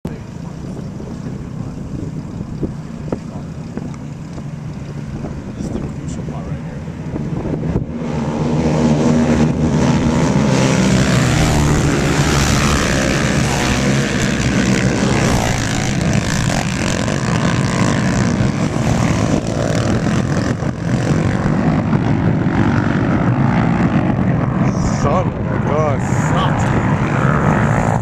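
Racing quads (ATVs) under hard throttle. They are faint at first, then loud and sustained from about eight seconds in as they pass close by, with the engine pitch rising and falling as the riders work the throttle.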